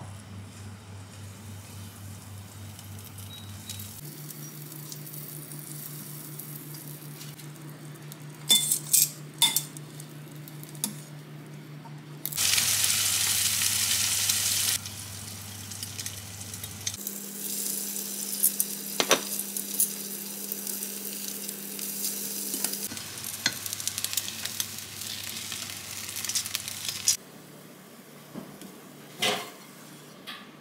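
French toast frying in butter in a nonstick pan: steady sizzling with light clicks and taps of a utensil, swelling to a loud hiss for about two seconds around twelve seconds in. A low steady hum runs underneath and shifts in pitch several times.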